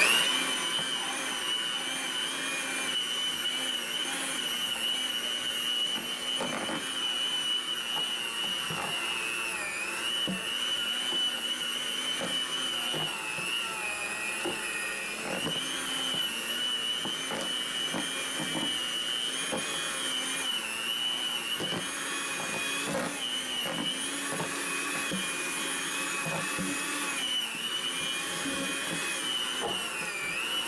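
Electric hand mixer running steadily through thick, heavy paper clay of wet cellulose insulation, its motor whine dipping in pitch now and then as the beaters labour under the load. Scattered light knocks sound as it works.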